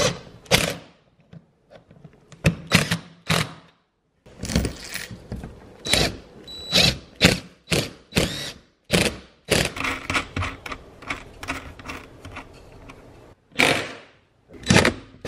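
Irregular short clicks, knocks and clinks of metal tools and fasteners on the light-bar mounting brackets as the bracket bolts are driven in and tightened.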